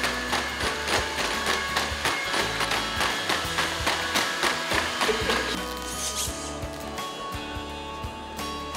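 Background music with a quick, steady beat that drops away about five and a half seconds in, leaving mainly held notes.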